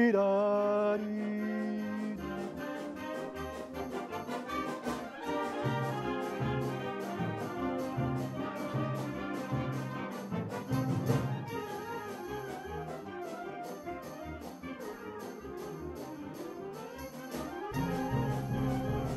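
A harmonie wind band playing a passage together, brass to the fore, over a low line that repeats in a steady rhythm.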